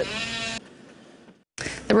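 Speech only: a woman's voice holding out the last word for about half a second, a moment of faint background noise, a brief dead gap, then another woman begins speaking near the end.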